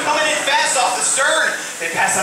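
Speech only: a voice talking loudly, with a short break near the end.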